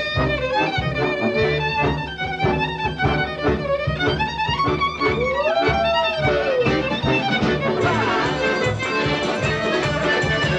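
A klezmer tune on solo violin, full of quick ornaments and slides, over a band accompaniment with a steady beat. About five seconds in, the violin makes a long slide up and back down.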